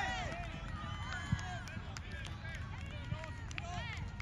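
Players and onlookers shouting and calling out on a soccer field, the voices distant and unintelligible, over a steady low rumble of wind on the microphone. A single sharp thump sounds about a second in.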